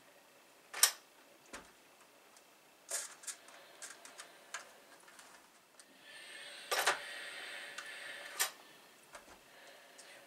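A few light clicks and taps of small pieces and tools being handled, then a steam iron hissing for about two and a half seconds as it presses wool motifs backed with fusible onto the postcard, with a couple of sharper clicks during the steaming.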